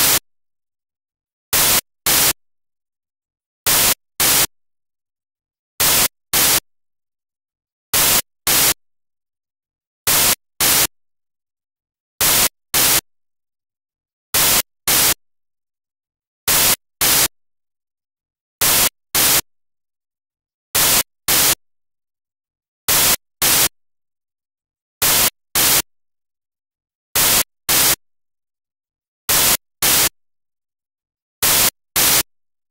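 Loud bursts of static hiss from a corrupted recording, coming in pairs about half a second apart and repeating roughly every two seconds, with dead silence between the pairs.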